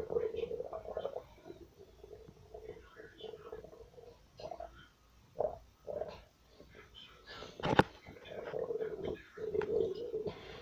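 A stomach grumbling in bubbly gurgles that come and go, with a sharp click nearly eight seconds in. It is the growl of an empty, hungry stomach.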